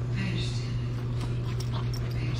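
Dogs playing on dry dirt, with a short faint whine from a dog kept on a tie-out that can't join in. A steady low hum runs underneath.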